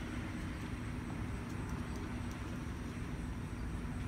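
Faint, steady outdoor background rumble of distant road traffic, with a low steady hum running under it.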